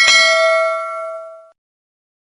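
Subscribe-animation sound effect: a quick click, then a single notification-bell ding that rings and fades for about a second and a half before cutting off.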